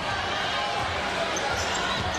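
Steady crowd noise filling a basketball gym during live play, with a basketball being dribbled.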